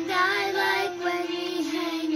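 A child singing a slow song in long held notes, the pitch stepping down slightly about a second and a half in.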